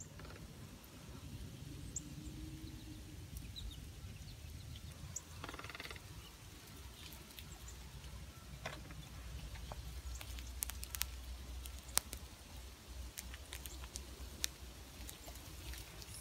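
Faint outdoor ambience in a snowy backyard: a low rumble with scattered light clicks and taps, and a short call about five seconds in.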